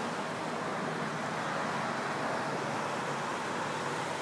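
Steady, even background noise: a constant hiss with a faint low hum and no distinct events.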